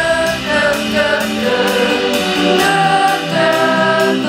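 A live rock band playing through a festival sound system: held, layered sung notes over electric bass and a steady drum beat.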